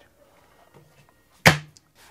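Quiet room for about a second and a half, then a single sharp knock.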